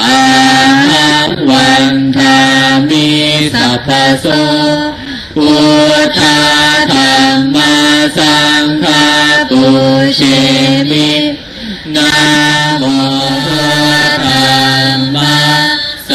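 Buddhist chanting: voices reciting in a melodic chant on long held notes, in phrases broken by short pauses.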